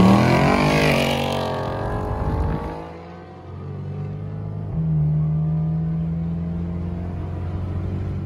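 Ford Mustang engine revving as the car accelerates from a stop, the pitch rising sharply and then fading as it pulls away. Then a steady car engine drone from inside a moving car, getting louder about five seconds in.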